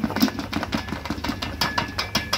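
Bakery planetary mixer running with a steady motor hum, under a rapid, irregular clatter of clicks and knocks from the whisk, bowl and plastic bucket as flour is tipped in.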